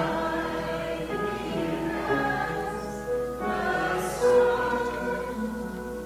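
A choir singing slowly, with long held notes.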